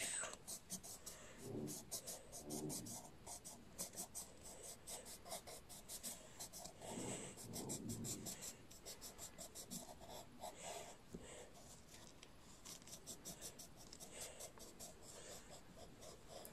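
Colored pencil scribbling back and forth on paper, a faint, fast and even run of scratching strokes as an area is shaded in.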